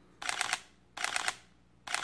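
Sony A7R III shutter firing in short high-speed continuous bursts: two quick runs of rapid clicks at about ten a second, with a third starting near the end.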